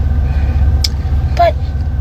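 A steady low rumble under a pause in a woman's speech, with one sharp click a little under a second in and a brief spoken "but" near the end.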